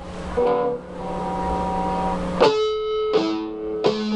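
Electric guitar notes played to show the tone with harmonics, ringing out with a sharp, edgy sound. There is a soft note first, then strong picked attacks about two and a half and three seconds in and again near the end, each left to ring.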